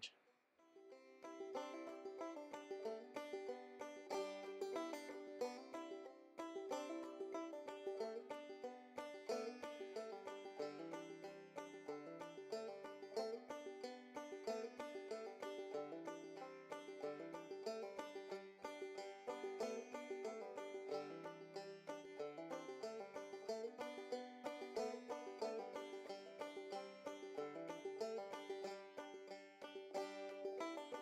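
Background music: a fast-picked banjo tune in a bluegrass style, rapid plucked notes over a moving bass line, starting about a second in.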